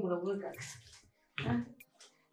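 Speech only: a person talking in the first half-second, then a short vocal burst about a second and a half in.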